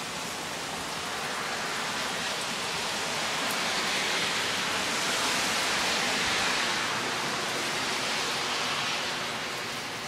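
Steady rain falling outside on roofs and pavement. It grows louder from about three seconds in and eases near the end.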